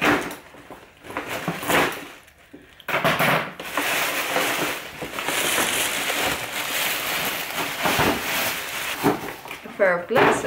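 Tissue paper and a paper gift bag rustling and crinkling as the wrapped contents are pulled out, a steady crackling rustle from about three seconds in until just before the end.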